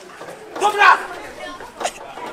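A voice calling out in a short burst, followed by a single short sharp knock near the end.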